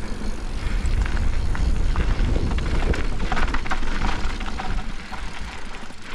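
Wind buffeting the bike-mounted camera's microphone as a mountain bike rolls over loose gravel, a steady rumble with the tyres crunching and the bike rattling over small stones, easing slightly near the end.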